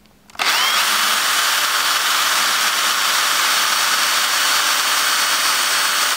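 Drill driver spinning up and running steadily as it drills a pilot hole through a castor mounting plate into a guitar amp cabinet.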